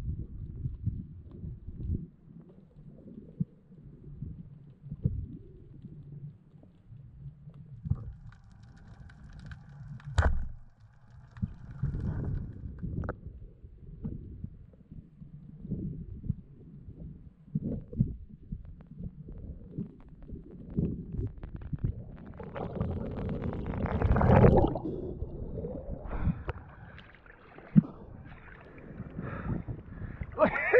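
Underwater sound picked up through an action camera's housing while freediving: irregular muffled knocks and low rumbles of moving water. A sharp click comes about ten seconds in, and a louder rushing swell comes a few seconds before the end.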